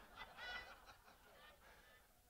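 Near silence: room tone, with a faint, brief high-pitched sound about half a second in.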